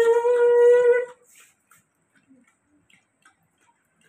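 A long held tone that rises slightly in pitch and stops about a second in, followed by faint, irregular lapping clicks from a Rottweiler drinking water from a plastic bowl.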